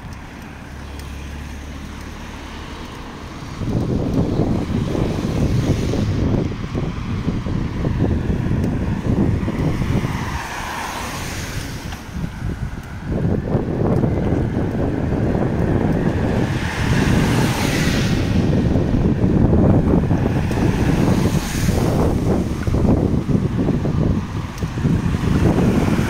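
Wind buffeting the microphone in gusts while cars drive past on a rain-soaked road, their tyres hissing on the wet asphalt, several passes swelling and fading.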